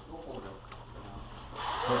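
Rustling of clothing and gear and soft footsteps from people walking quickly along a carpeted hallway, over a steady low hum; about one and a half seconds in the rustling swells into a louder rush, and a man starts to speak at the very end.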